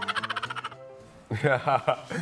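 Laughter: a fast, pulsing run of laughing, a short pause, then a man and a woman laughing together about a second and a half in.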